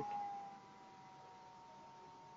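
Near silence: room tone of the recording with faint, thin electronic tones around 1 kHz, one of them slowly sliding down in pitch, after the last word fades in the first half second.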